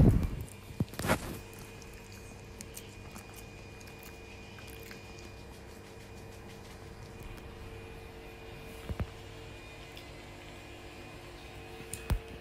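Quiet room with a faint steady hum, broken by a few light knocks about a second in and one more near nine seconds.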